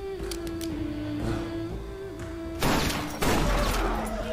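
Film score holding one long note, then two pistol shots about half a second apart near the end, each ringing briefly in the room.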